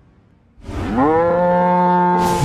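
A cow mooing: one long call that starts about half a second in, rising in pitch and then held steady.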